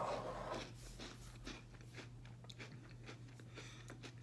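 A person finishing a bowl of Cinnamon Toast Crunch Remix cereal in milk: a short slurp at the start, then quiet chewing with faint small clicks.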